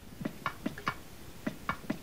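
A series of short sharp clicks at an even pace, four in a row and then four more, from an oil can being worked to oil the Tin Man's joints.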